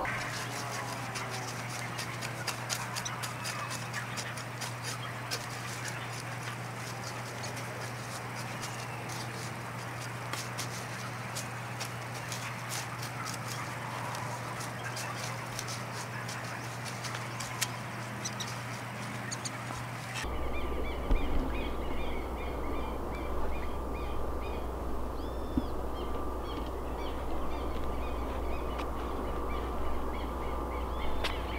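A small hand hoe scraping and chopping through weeds and soil between lettuce beds, with dense, irregular light clicks and rustling; birds call in the background. About 20 seconds in the sound changes abruptly to a different outdoor background with a low rumble and occasional bird chirps.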